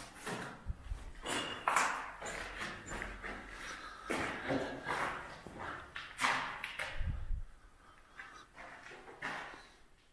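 Footsteps and scuffs on a gritty concrete floor, irregular and echoing in a bare bunker room, quieter near the end.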